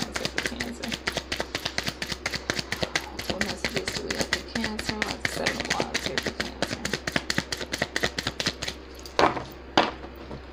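Rapid, even clicking, about eight clicks a second, over faint murmured speech; the clicking stops with two louder knocks near the end.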